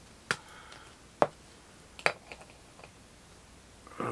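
Four sharp plastic clicks and taps, the second the loudest, as a trading card in a hard plastic holder is handled and set into a clear acrylic display stand.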